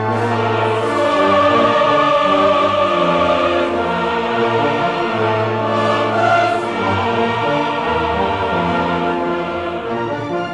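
Choir and symphony orchestra performing together, the chorus singing long, held chords over a full orchestral texture, heard through the limited quality of an off-air radio recording.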